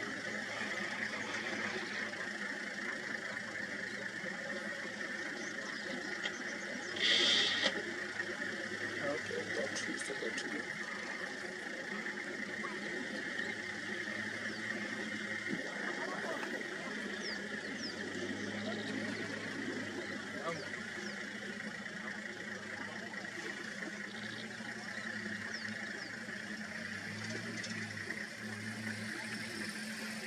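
Low hum of idling safari vehicle engines under a steady high-pitched drone, with one short hissing noise about seven seconds in.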